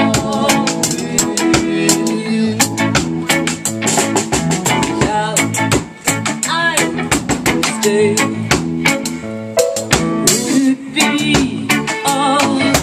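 Live band playing: drum kit keeping a steady beat under electric guitar and keyboard.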